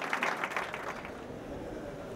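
Applause, fading out about a second in.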